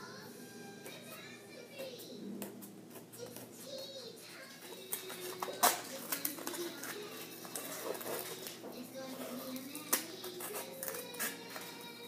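Scissors cutting into a foam meat tray: scattered snips and clicks, the sharpest about five and a half seconds in, over faint background voices and music.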